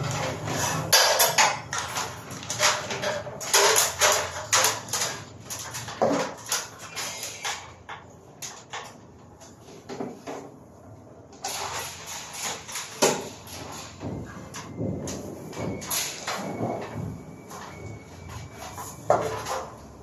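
Bundles of insulated electrical wire being handled and pulled, the cables rustling and scraping against each other in irregular bursts, with a lull of a few seconds near the middle.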